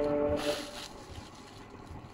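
Silk saree fabric rustling as it is unfolded and shaken out by hand, loudest in the first second. A steady, horn-like pitched tone sounds during the first half second.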